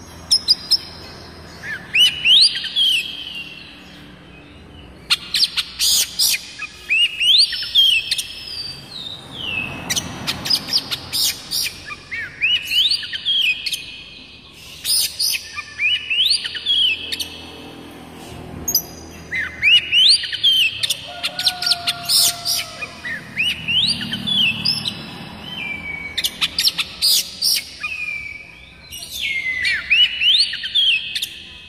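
Oriental magpie-robin (white-breasted kacer) singing. Phrases of rising and falling whistles mixed with sharp clicking notes come every few seconds, with short pauses between them.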